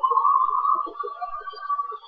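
Audio of a televised improv comedy show playing through a laptop's small speaker, thin and muffled, with no clear words.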